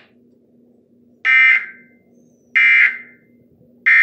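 Emergency Alert System end-of-message code: three short, identical digital data bursts about 1.3 s apart, the third near the end, played through a television speaker. These bursts signal that the alert message is over.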